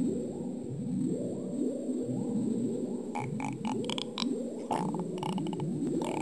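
Cartoon soundtrack of low warbling tones that slide upward over and over in a repeating pattern. Quick clicks join about halfway through.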